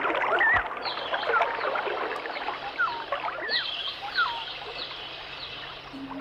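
Birds chirping, a string of short up-and-down calls and higher falling chirps, over a steady rush of flowing water.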